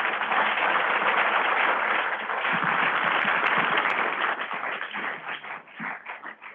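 Audience applauding, dense and steady at first, then thinning out to scattered claps over the last second or two.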